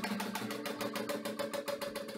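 Acoustic guitar played with fast, even tremolo picking, about a dozen strokes a second, over a few held notes.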